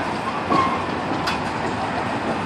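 Spider amusement ride in motion, giving a steady mechanical rumble and rattle.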